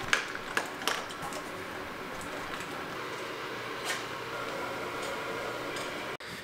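Dog at a raised stainless-steel bowl, with several sharp metallic clinks in the first second or so and one more near the end, over a steady low background.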